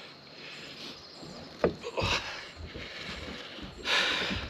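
Handling noises as a freshly landed bass is held and unhooked on a boat deck: a single sharp knock about a second and a half in, then a couple of short scuffing bursts.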